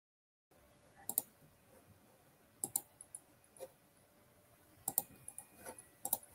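Computer mouse clicking: a handful of sharp clicks, several in quick pairs, about a second apart, picked up faintly by an open microphone over quiet room noise. The sound cuts in about half a second in.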